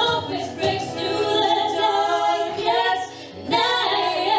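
Women singing a song in harmony with a small live band of acoustic guitar, electric guitar, bass and drums; the voices stop for a breath about three seconds in, then carry on.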